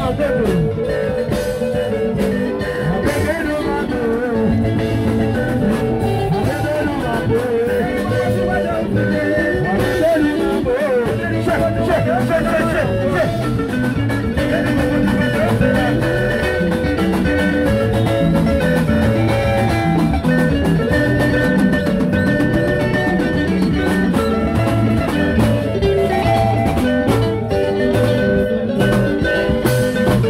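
Live band music played loud through the stage sound system, with singing over the band.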